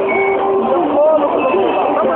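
Voices mixed with long, steady car-horn tones over the running noise of cars and motorbikes moving in a slow procession.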